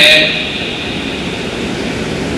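A steady rushing noise in a pause of a man's speech, which trails off in the first quarter second.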